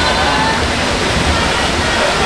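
Steady wash of splashing from swimmers racing down their lanes in an indoor pool hall, mixed with spectators' shouts and cheers.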